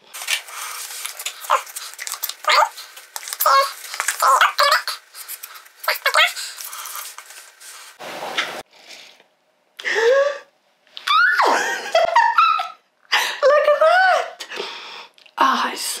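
A new Mickey-shaped plastic foam soap pump is pressed several times to prime it until foam comes out, with hissy, squirting pump strokes in the first half. A woman's wordless vocal reactions follow in the second half.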